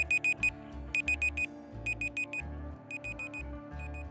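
Electronic countdown-timer beeps in quick bursts of four high beeps, about once a second, over background music with a low pulsing bass.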